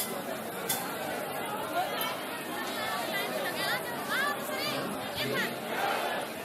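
A large crowd of people talking at once: a steady babble of overlapping voices. A few higher-pitched calls rise and fall above it in the second half.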